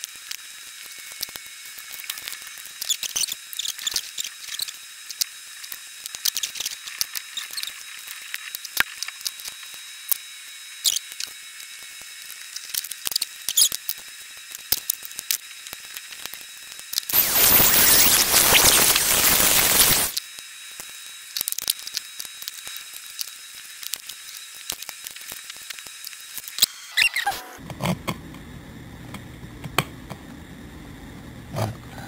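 Scattered small clicks, taps and rattles of hands handling an e-bike controller's wiring, casing and tools on a wooden floor, over a steady hiss. About seventeen seconds in, a loud rushing noise lasts about three seconds, and near the end a low hum comes in.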